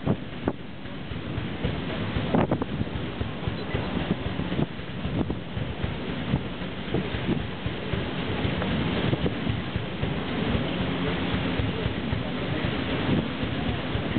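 Wind buffeting and crackling on the microphone over the steady running noise of the paddle steamer PS Waverley under way.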